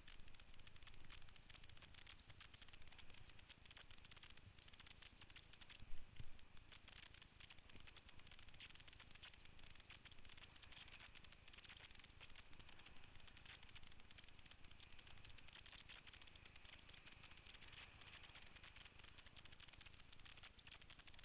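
Faint, steady rush and crackle of whitewater around a kayak running a rapid, with a single knock about six seconds in.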